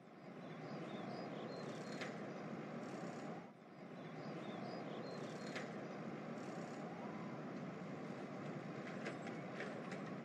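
Street ambience bed: a steady rumble of distant traffic with faint high chirps and a few light clicks, dipping briefly about three and a half seconds in.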